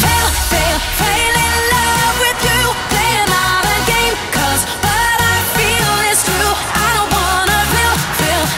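Pop song with sung vocals over a steady beat.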